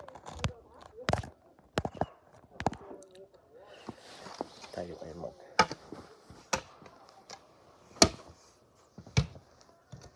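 Footsteps crunching through knee-deep fresh snow, one sharp crunch about every second, with a few knocks and handling noises in the first few seconds.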